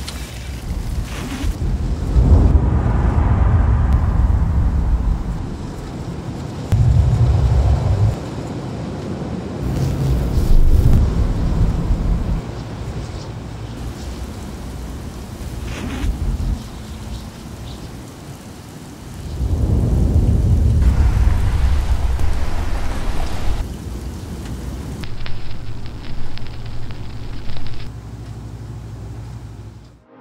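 Layered film sound-design ambience: steady rain and cars going by, which come in several loud, low swells, with wind and added whoosh-like texture effects.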